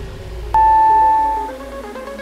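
Workout interval timer giving one long beep that starts about half a second in and lasts about a second, marking the end of a work interval. Underneath, quieter electronic dance music thins out with a slowly falling sweep.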